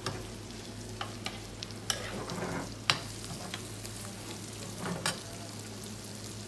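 Pieces of kuchmachi (offal) sizzling in a frying pan while they are stirred and turned with a metal spoon and tongs. The metal knocks against the pan about five times, loudest about three seconds in.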